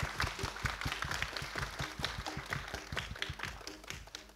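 Audience applauding, a dense patter of many hands clapping that slowly thins and fades toward the end.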